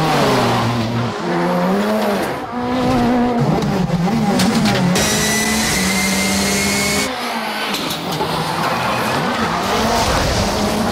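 Ford Fiesta rally car's engine revving hard, its pitch climbing and falling with each throttle stab as the car drifts, with tyres squealing. A high, steady tyre squeal stands out from about five to seven seconds in.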